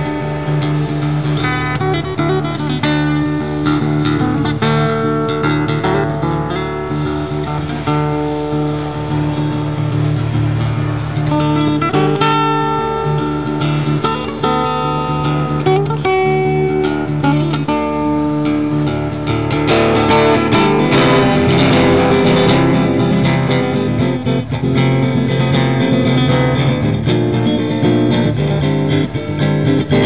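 Solo Countess steel-string acoustic guitar played fingerstyle: a held bass line under picked melody notes. About twenty seconds in the playing grows louder and busier.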